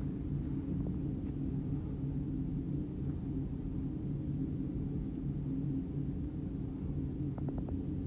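Steady low background hum, with a quick run of soft clicks near the end, like a computer mouse being clicked or scrolled.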